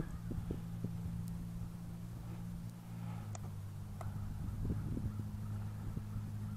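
A faint, steady low hum that steps slightly higher in pitch about three seconds in, with a few light clicks as the buttons on a handheld FPV monitor are pressed to start its DVR recording.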